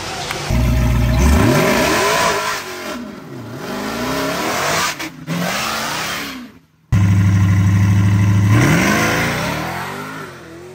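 Supercharged V8 of a Dodge Charger Hellcat at full throttle, pulling away down the drag strip, its pitch climbing and dropping through the gear changes. The sound cuts out abruptly about two-thirds of the way in, comes back just as loud, and climbs again near the end.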